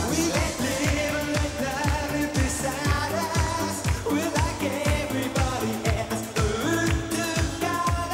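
Late-1980s synth-pop dance track with a steady kick drum about twice a second, synthesizers and male singing.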